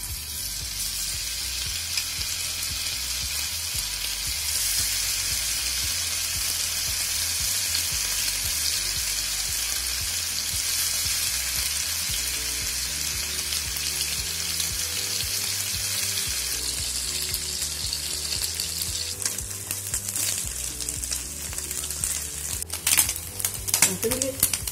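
Chilli- and cornflour-coated anchovies (natholi) deep-frying in hot oil in a pan: a steady, loud sizzle that grows stronger after the first few seconds. Near the end come a few sharp clicks.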